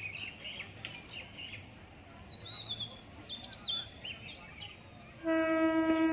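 Birds chirping and calling over quiet ambient noise, then about five seconds in a local train's horn starts: a loud, steady multi-tone blast that holds on, the signal of a train approaching the station.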